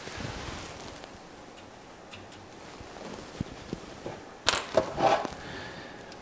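The Tamiya Bruiser's hard plastic body being handled and turned over on a workbench mat. A few faint clicks come first, then a cluster of louder knocks and rubbing about four and a half seconds in, as the body is set down.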